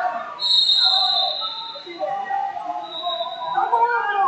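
Voices of people calling out in a large hall during a wrestling bout. A high, steady tone sounds for about a second and a half near the start, and a shorter one comes near the end.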